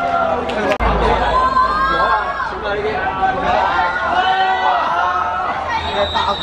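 Several people's voices chattering and calling out at once, overlapping, around a football pitch.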